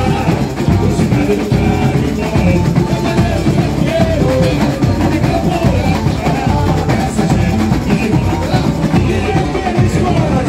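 A samba school's drum section (bateria) playing live, dense snare and bass drum percussion, with a man's voice singing over it through a microphone.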